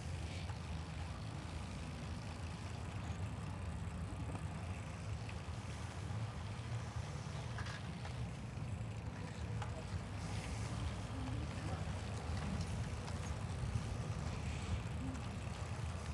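Steady riding noise from a moving bicycle on a brick-paved street: a low rumble of wind on the microphone and tyres on the pavers.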